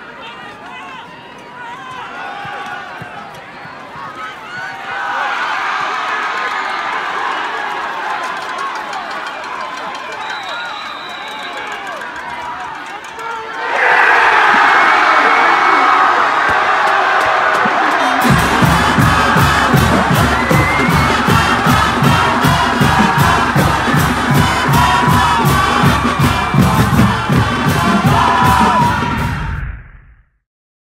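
Football stadium crowd cheering, swelling about five seconds in and jumping to a loud roar about fourteen seconds in as a touchdown is signalled. From about eighteen seconds in, loud music with a steady fast beat plays over the cheering, and all of it stops abruptly just before the end.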